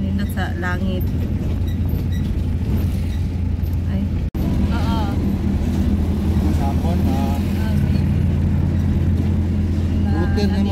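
Vehicle engine and road noise heard from inside the cabin while driving, a steady low drone, with voices coming and going over it. The sound cuts out for an instant a little after four seconds.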